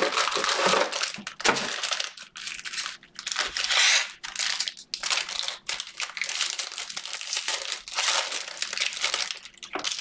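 Foil trading-card pack wrappers crinkling and rustling in uneven bursts as the packs are handled and a pack is torn open.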